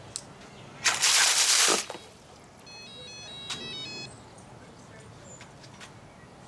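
FPV racing quad's motors spun up under about 11.5 inches of water, the propellers churning it in a loud rush of just under a second about a second in. The quad is still answering the radio while submerged. A short run of electronic beeps stepping between several pitches follows.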